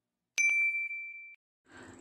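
A click followed by a single bright ding, a notification-bell sound effect: one clear high tone that rings out and fades away over about a second.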